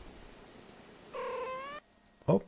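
A domestic cat's single short meow, slightly rising in pitch, about a second in, played back from a video clip; it cuts off suddenly as playback is paused.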